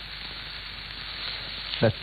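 Food sizzling steadily in a hot pan, with a short word spoken near the end.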